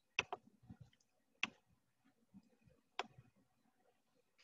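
Faint, sharp computer mouse clicks: a quick double click near the start, then single clicks about a second and a half and three seconds in.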